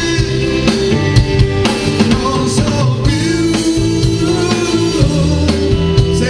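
A live band playing a song: electric guitar and drum kit, with a man singing.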